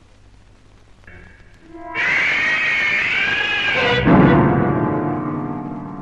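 Dramatic film soundtrack: after a quiet start, a sudden high, wavering screech lasts about two seconds and cuts off into a loud, low piano chord that rings and slowly fades.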